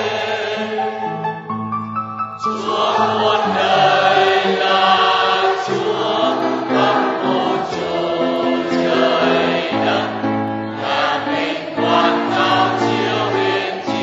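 A choir singing a slow hymn in long held notes, several voices in harmony.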